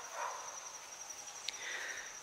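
A steady high-pitched insect trill fills the background, with a faint click about one and a half seconds in.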